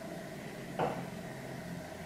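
Lipstick being applied to the lips: quiet room tone with one short, soft sound a little under a second in.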